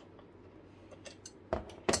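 Steel adjustable wrench being set down on a work table: two short metal knocks about a third of a second apart near the end, the second louder.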